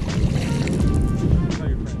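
A bass tossed back into a pond hits the water with a splash at the very start, followed by background music with a steady beat.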